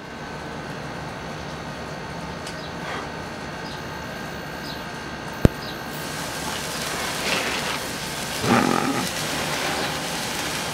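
A bunch of five sparklers lit together, catching and fizzing: the hiss builds from about six seconds in. A single sharp click comes just before they catch.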